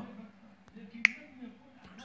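A single sharp click about a second in, with a couple of fainter ticks around it: a finger tapping a smartphone's touchscreen keyboard.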